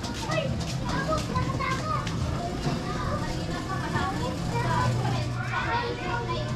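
Children's high voices chattering and calling out in short bursts, over a steady low hum.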